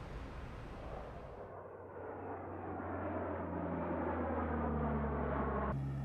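Four-engine turboprop aircraft, NASA's P-3, with its engines running. A steady drone comes in about a second and a half in and slowly rises in pitch and loudness.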